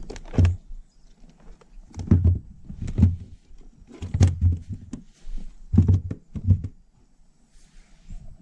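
Hollow knocks and thumps on a plastic kayak hull, about seven in a loose series roughly a second apart, as the rod and a freshly caught small peacock bass are handled in the cockpit.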